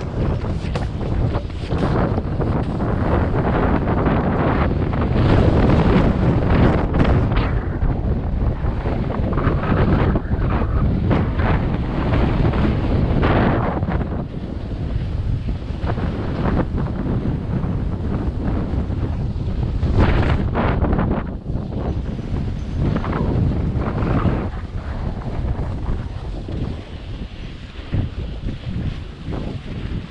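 Wind buffeting a GoPro microphone during a fast snowboard run, mixed with the board scraping over packed snow. It is loudest through the first half, surges again about two-thirds of the way through, and eases off near the end.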